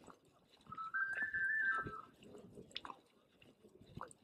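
A whistle playing a short run of notes, stepping up in pitch and back down over about a second, with faint scattered clicks around it.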